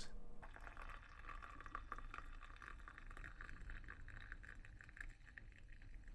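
Hot tea poured in a thin stream from a metal teapot into a glass: a faint, steady trickle that begins about half a second in.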